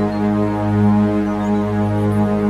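Meditation music drone: a steady, deep sustained tone tuned to 207.36 Hz (G sharp, billed as the 'Uranus' planetary frequency), with a lower tone an octave beneath and many overtones, swelling gently in loudness.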